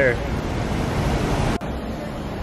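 Steady rushing city street traffic noise. About one and a half seconds in the sound cuts abruptly and carries on as a slightly quieter street ambience.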